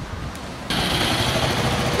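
Large motor scooter's engine idling under a steady hiss, which comes in suddenly about a third of the way in after a faint low rumble.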